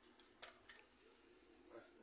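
Near silence, with a few faint short sipping sounds in the first second, the clearest about half a second in: a small sip of mezcal taken from a little glass, drawn in with air.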